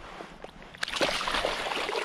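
Water splashing for about a second as a released trout kicks away from the angler's hands in shallow creek water.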